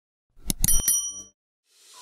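Intro sound effect for a subscribe-button animation: a quick run of clicks about half a second in, with a short, bright, bell-like ding ringing over them and fading within a second.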